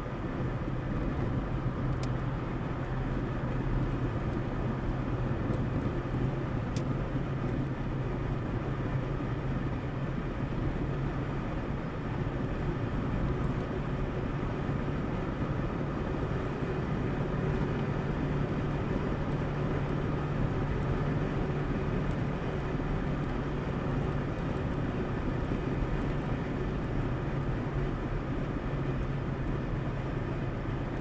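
Steady road noise inside a car cruising on a highway: a constant low engine hum under the rumble of tyres on asphalt.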